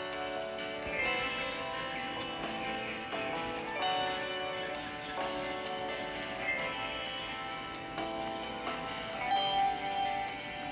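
A bird chirping: short, sharp, high chirps that drop slightly in pitch, coming every half second or so with a quick run of several near the middle, heard over background music with sustained notes.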